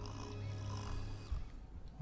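Film soundtrack: quiet music under one long, low snore from a sleeping boy, which stops about two-thirds of the way through.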